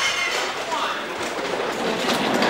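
Skeleton sled's steel runners sliding fast down an iced track, a steady scraping hiss.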